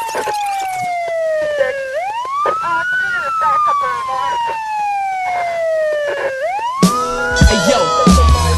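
A wailing siren, its pitch sweeping up quickly and then falling slowly, twice over, as part of a hip hop track's intro. Near the end a beat with heavy bass comes in under it.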